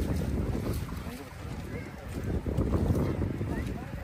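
Uneven wind noise on the microphone, with faint voices in the background.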